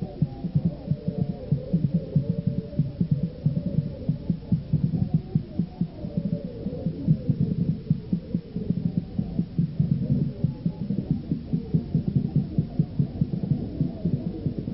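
Fast, dense drumming of low thumps in a steady, busy rhythm, with wavering higher tones over it; the sound is muffled, with no top end.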